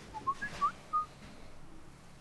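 A short whistled phrase of about five quick notes, some sliding upward, within the first second.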